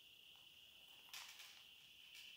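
Near silence: a faint steady high-pitched hum, with one brief faint rustle about a second in as the leather wallet and its banknotes are handled.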